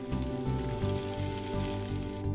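Food sizzling in a frying pan, a steady crackling hiss, under soft background music.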